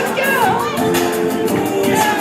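Karaoke backing track playing loud over a sound system with a steady beat, and a voice over it.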